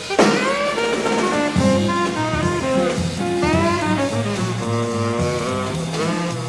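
Small jazz group playing live in a swing style: tenor saxophone carries the melodic line, with upward scoops into notes, over guitar, bass and drums. A sharp drum accent lands just after the start.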